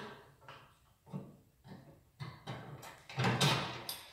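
Metal pin being put through a grill lid's high-lift hinge: a few short, faint metal clicks and scrapes, the loudest about three seconds in.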